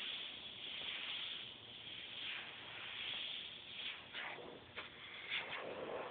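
Airbrush spraying paint onto fabric in a series of hissing bursts, becoming shorter separate puffs near the end.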